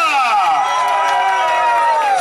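An announcer's amplified voice drawing out one long call, as a name is stretched out to lead a round of applause: the pitch slides down at first and then holds a steady note for more than a second. A crowd cheers underneath.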